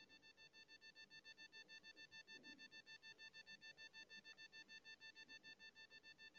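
Near silence, with only a faint, steady high-pitched tone underneath.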